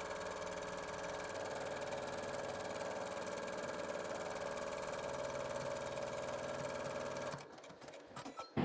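Computerized embroidery machine running steadily as it sews a placement stitch, with a fast, even stitching rhythm. It stops about seven and a half seconds in.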